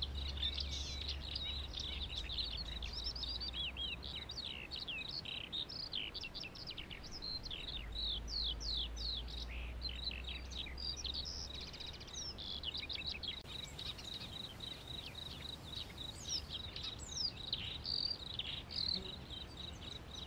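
Many small birds chirping in quick, falling notes over a steady high-pitched whine.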